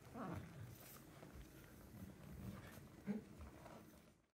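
Faint movement sounds of two barefoot dancers on a stage dance floor with no music. There are two short squeaks: one falling in pitch near the start, and a louder, brief one about three seconds in.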